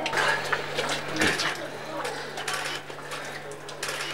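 Indistinct talk from a group of people, with a few sharp light clicks and clinks scattered through it over a steady low hum.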